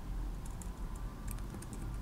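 Light, irregular keystrokes on a computer keyboard, starting about half a second in, over a low steady background hum.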